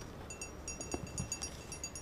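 Quick, uneven run of light metallic ticks, several a second, as the band wheel of a portable bandsaw mill's sawhead is turned by hand to check that the blade is tracking. A couple of soft thumps come near the middle.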